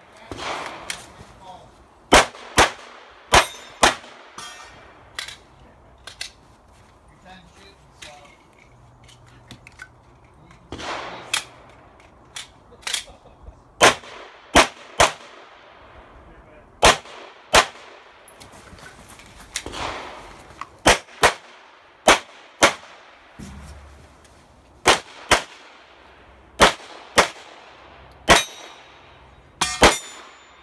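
Glock pistol fired in a USPSA stage run: sharp shots, mostly in quick pairs about half a second apart, in strings broken by pauses of a few seconds.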